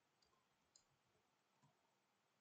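Near silence with a few very faint computer keyboard key clicks: a short word typed and entered.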